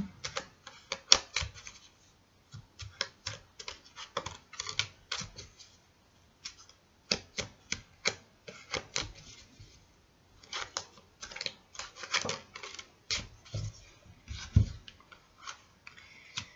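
Tarot cards being shuffled in the hands: quick runs of papery clicks and flicks, in bursts separated by short pauses.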